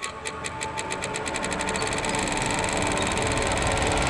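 Electronic sound-effect riser: a run of clicks that speeds up steadily until it merges into a continuous buzz, growing louder throughout.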